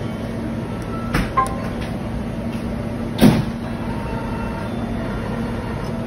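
Convenience-store multifunction copier scanning a document: a short touchscreen beep about a second in as the scan starts, then the machine working under a steady hum, with one louder mechanical whoosh about three seconds in.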